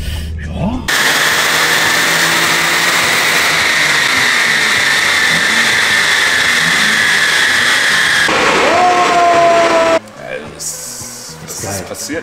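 Supercharged BMW M54 straight-six running hard under load: a loud, steady roar with a high supercharger whine through it. About eight seconds in the roar stops, and a single whine glides up and holds for over a second before the sound cuts off abruptly.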